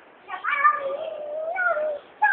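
A young child's long, high-pitched drawn-out vocal call, held on one wavering note with a short rise near the end, like a cat's meow.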